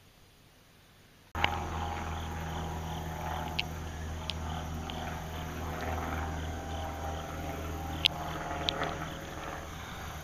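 A vehicle engine idling steadily, cutting in abruptly about a second in, with a few sharp clicks over it.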